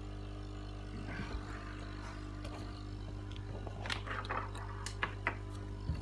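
Steady low electrical hum of aquarium equipment, with a few faint clicks and taps in the second half.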